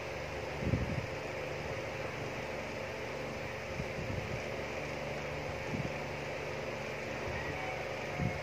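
Steady mechanical hum of room background noise, with a few faint low bumps.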